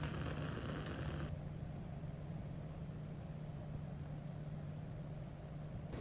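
Bunsen burner flame hissing steadily, stopping abruptly about a second in and leaving a steady low hum.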